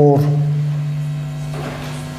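A man's voice holding a low, steady hum, a drawn-out 'mmm' of hesitation that fades slowly, over a faint steady electrical hum.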